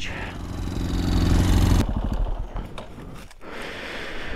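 Motorcycle engine running steadily, then cut off suddenly about two seconds in. Scattered light clicks and rustles follow.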